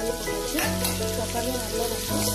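Chopped tomatoes tipped into a hot pan of frying onions, a burst of sizzling about half a second in as they land, then scraped and stirred with a wooden spatula. Background music plays throughout.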